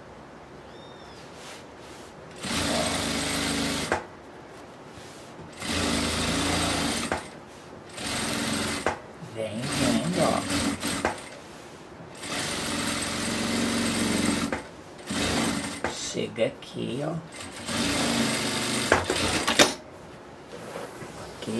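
Sewing machine stitching through a layered patchwork rug, batting and lining along the seams between blocks. It runs in several short bursts of one to three seconds each, stopping and starting between them.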